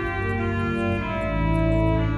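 Church organ playing sustained chords of a hymn refrain over a deep bass line, moving to a new chord about halfway through.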